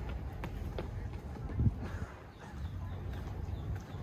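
Footsteps on a paved concrete walkway, heard as short sharp ticks over a steady low rumble. A single louder low thump comes about a second and a half in.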